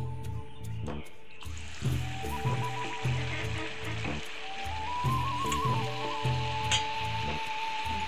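Background music with a steady beat and a melody, over hot oil sizzling in a wok as a rice-flour pitha fries; the sizzle comes in about one and a half seconds in and carries on under the music.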